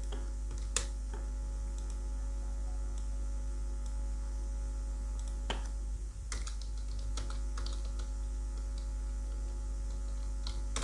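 Computer keyboard keystrokes and clicks: one click about a second in, then a few scattered clicks, and a cluster of keystrokes in the second half as a cell label is typed, over a steady low electrical hum.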